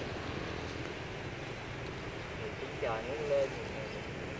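A steady low background rumble, with a short burst of a person's voice about three seconds in.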